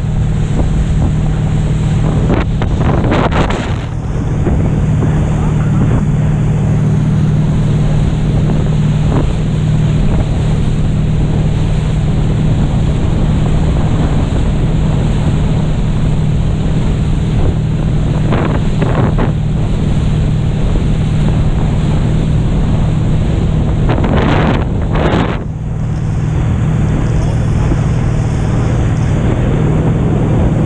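Wind buffeting the microphone and water rushing past an inflatable banana boat towed at speed through a motorboat's wake. Under it runs a steady low drone from the towing motorboat. Three louder surges come about three seconds in, just past halfway, and about five seconds before the end.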